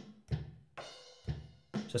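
Background music: a drum kit beat, with sharp drum hits about twice a second.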